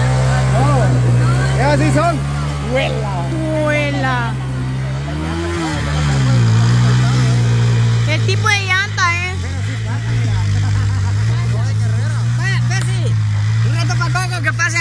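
Small motorcycle engine running hard under load, its pitch dipping and rising as the rear wheel spins and throws mud in a muddy ditch. Voices shout over it several times.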